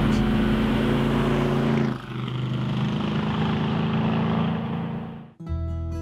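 1965 Chevrolet Corvette Stingray's V8 running on the road, its note stepping down to a lower pitch about two seconds in and fading out near the end, where guitar music begins.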